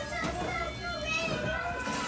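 Several young children talking and playing at once, their high voices overlapping, with no clear words.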